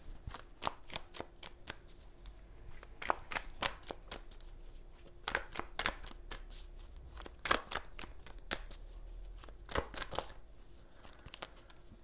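A deck of tarot cards being shuffled by hand: a run of irregular papery flicks and snaps, coming in denser flurries every couple of seconds.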